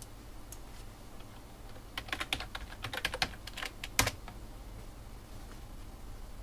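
Computer keyboard being typed on: a quick run of keystrokes lasting about two seconds, ending in one harder stroke of the Enter key.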